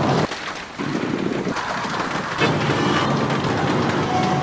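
Strong wind and heavy rain of a night storm hitting a vehicle, heard from inside the cab through the windscreen. The noise changes abruptly about a quarter of a second in and again past the middle, as the footage cuts between shots.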